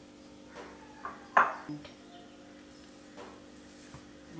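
Quiet background music held on steady notes, with a few light knocks and clinks of kitchen ware on a wooden board as dough is handled from a glass bowl; the sharpest knock comes about a second and a half in.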